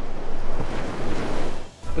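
Surf breaking on a sandy beach, a steady rushing wash of waves with wind buffeting the microphone. It cuts off suddenly near the end.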